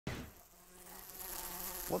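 Flies buzzing: a steady drone that fades briefly near the start, then slowly grows louder.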